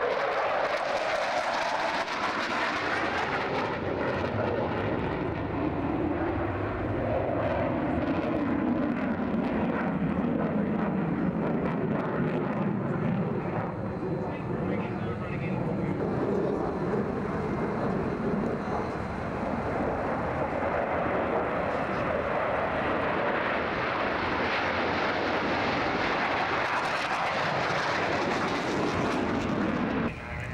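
MiG-29 Fulcrum jet fighters' twin turbofan engines heard in flight, a loud continuous jet rush. The engine pitch slides downward as they pass over the first dozen seconds, and the noise swells again near the end.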